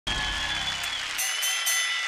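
Studio audience applauding over a short burst of music. A low sustained chord cuts off about a second in, followed by three quick high ringing notes.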